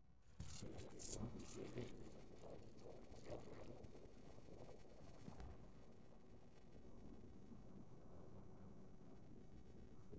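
Quiet open-air ambience on a mountainside. A few brief rustling, scratchy noises come in the first few seconds, then a low steady hush.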